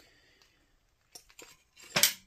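A few light metallic clinks, then a louder knock just before two seconds in, as the cast side cover of a Predator 212cc engine is handled against the engine block on a metal workbench.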